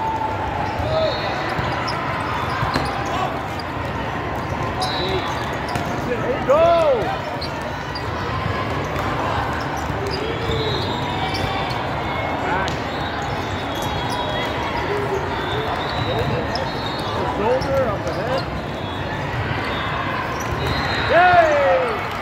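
Din of a volleyball game in a large hall: steady crowd chatter with scattered ball hits and shoe squeaks on the court floor. There are louder short squeals about six and a half seconds in and again near the end.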